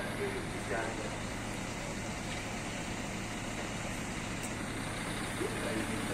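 MÁV V43 electric locomotive approaching in the distance with an intercity train: a steady low hum under an even rumble that holds level.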